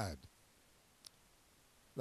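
A pause in speech: near-silent room tone with a single short, faint click about a second in.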